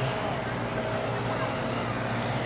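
Steady low machine hum over a general background noise of a busy racing grid, with no single event standing out.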